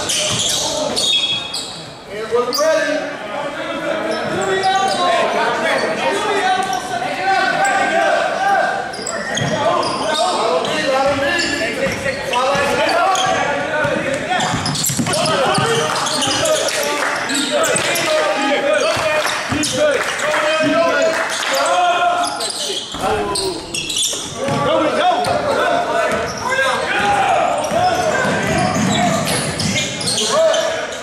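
Basketball being dribbled on a hardwood gym floor, with the bounces mixed into indistinct shouting and chatter of players and onlookers in a large gym.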